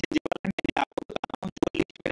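A voice chopped into rapid stuttering fragments, many times a second with silent gaps between them, so that no words can be made out: glitching or sped-up narration.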